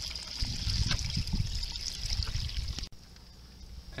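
Water being poured out of a 5-gallon plastic hydroponic bucket; the pour cuts off suddenly about three seconds in.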